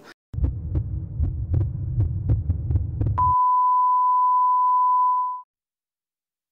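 Sound-effect heartbeat, fast low thuds about three a second, for about three seconds. It then switches to a steady high electronic beep, a heart-monitor flatline tone, held about two seconds before cutting off abruptly.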